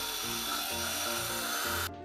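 Immersion (stick) blender running steadily, its blade puréeing a thin garlic, parsley and tomato mixture in broth inside a plastic beaker. The sound cuts off abruptly near the end.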